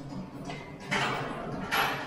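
A person exhaling hard twice in short, breathy puffs, about a second in and again near the end, with the effort of TRX knee tucks.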